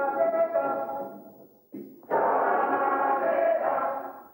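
A human voice intoning long held notes in a theatre exercise: one sustained note, with a small step in pitch early on, fades away; a second long note begins about two seconds in and dies away at the end.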